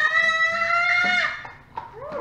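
A young child's voice holding one long, high, steady note for about a second and a half, a sung or drawn-out call that breaks off just over a second in.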